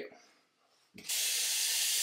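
Water from a tap starts running into a sink about a second in, as a steady hiss.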